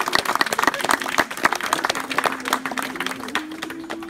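A crowd of guests clapping, the applause thinning out and fading toward the end.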